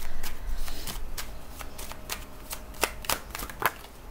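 Tarot cards being shuffled and handled by hand: a quick run of irregular card slaps and clicks, densest in the first second, then sparser.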